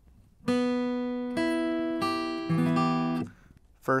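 Steel-string acoustic guitar with a capo on the second fret playing a D minor chord shape. The chord is struck about half a second in and sounded again three more times as it rings, then is damped shortly before the end.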